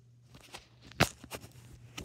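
Irregular knocks and bumps from a handheld phone camera being carried on the move, the sharpest about a second in.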